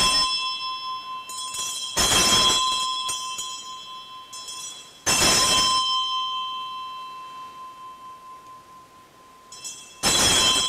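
Altar bells rung at the elevation of the newly consecrated host, marking the consecration. One ring is dying away as it begins, fresh rings come about two seconds and five seconds in, each fading slowly, and another starts right at the end.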